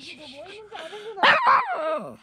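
Miniature pinscher grumbling in a long wavering whine, then two louder yelping howls that fall in pitch near the end. The small dog is complaining, annoyed at being out in the cold.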